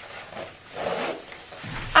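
The zip of a Superdry bomber jacket being pulled up from the bottom to the collar: one zipping stroke lasting about a second, with some rustle of the jacket fabric.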